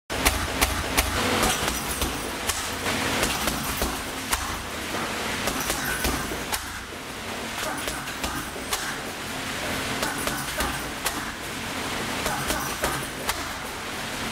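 Kicks and punches landing on a hanging leather heavy punching bag in an irregular series of sharp thuds, some followed by a brief metallic jingle from the bag's hanging chains, over a low steady hum.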